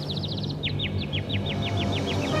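A bird chirping in a rapid, even series of short, high notes, each falling in pitch, about seven a second, over a low, steady music bed.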